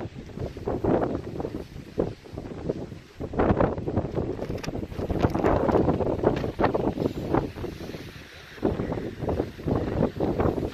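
Strong wind buffeting the microphone, a rumbling rush that rises and falls with the gusts.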